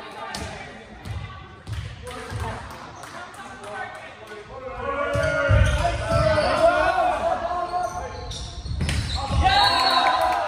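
Volleyball play in a large gym: sharp hits of the ball with players' shouts and calls, louder from about halfway through, echoing in the hall.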